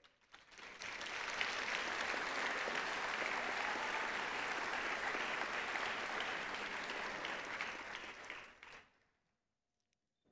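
Audience applause that builds up over the first second, holds steady, and dies away near the end.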